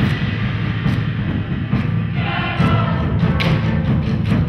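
Large bass drum laid flat and played with soft felt mallets: a dense, continuous low rumble of rapid strokes, with a few louder hits standing out.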